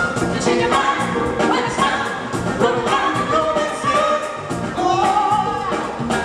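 Live funk and soul band playing, with a singer holding long notes over drums, guitars and keyboard.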